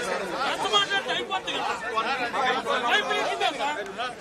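Several men talking over one another at once in a packed crowd, an unbroken babble of overlapping voices.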